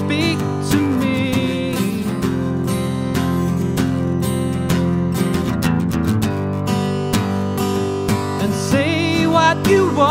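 Acoustic guitar strummed in a steady rhythm, with a man singing a short line just after the start and again near the end.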